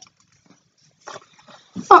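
Mostly quiet, with a faint soft noise about a second in, then a short spoken "Oh" near the end.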